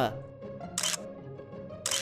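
Two camera-shutter clicks about a second apart, for a small toy camera being snapped, over steady background music.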